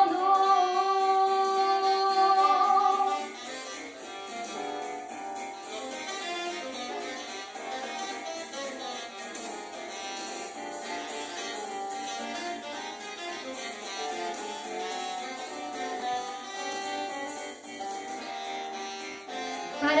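A girl's singing voice holds one long steady note for about three seconds. Then a jazz-style backing track carries on alone in a quieter instrumental break with keyboard notes.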